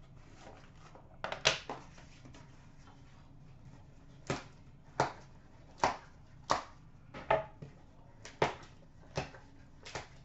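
Trading-card packaging and a hard plastic card holder being handled and set down on a glass counter: about a dozen sharp, irregular clicks and knocks.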